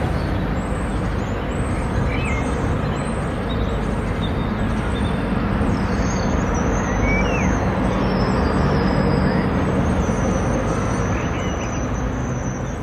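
Steady outdoor street noise, mostly a low traffic rumble, with a few brief high chirps.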